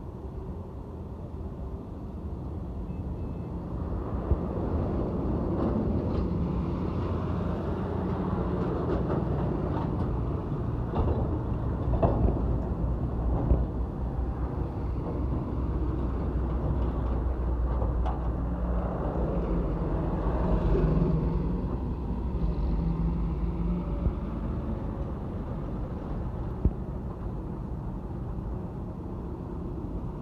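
Heavy diesel container trucks driving past on a road: a low engine drone and tyre rumble that builds as they come close, stays loud for a long stretch, then eases off. A few short knocks sound midway through.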